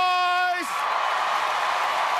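A man's long held shout cuts off about half a second in, and a large arena crowd cheers and applauds.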